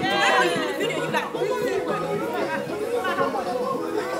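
Several people talking over one another, with one voice loudest near the start.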